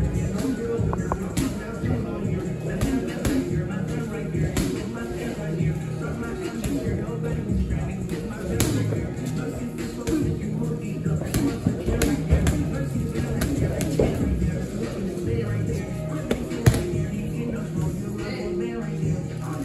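Gloved punches smacking against focus mitts in irregular flurries of sharp slaps, the loudest near the end. Music plays underneath.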